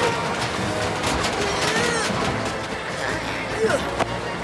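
Cartoon background music with short wordless vocal sounds from an animated character, a couple of brief rising and falling grunts over the score.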